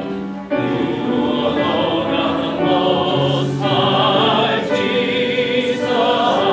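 Choir singing a slow sacred piece in long, held notes with a noticeable vibrato, with a short pause between phrases about half a second in.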